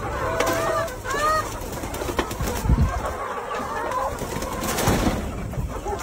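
A flock of brown laying hens making short, low calls, most of them in the first second and a half, with a few sharp taps scattered through.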